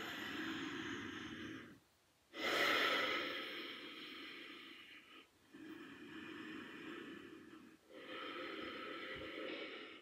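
A woman breathing deeply and audibly after a hard set of core exercises: four long breaths, the loudest starting sharply about two seconds in.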